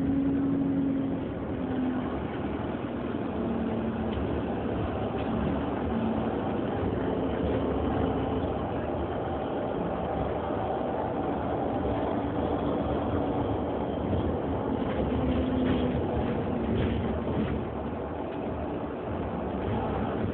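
Interior running noise of an Alexander Dennis Enviro400 Hybrid double-decker bus on the move: a steady mix of drivetrain and road noise, with a low hum that comes and goes several times.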